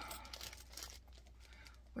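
Faint crinkling and rustling of handled packaging, dying away to near silence in the second half.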